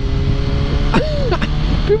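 Yamaha R1 sport bike's inline-four engine running steadily at low speed, under a constant low rumble of wind on the microphone.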